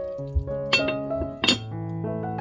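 A glass pan lid clinks twice on the rim of the pan, about three-quarters of a second apart, as it is set down over the simmering sauce, with background music playing throughout.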